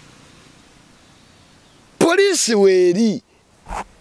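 A man's voice after a pause of about two seconds with only faint background hiss, speaking loudly and briefly with his pitch rising and falling.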